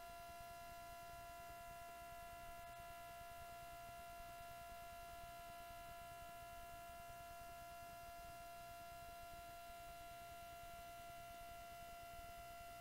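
Near silence with a steady electrical hum: a constant high tone and its overtones, unchanging, over faint hiss.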